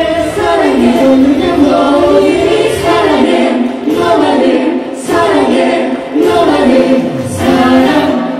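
Two female singers sing a song together into handheld microphones, amplified, with their voices in harmony.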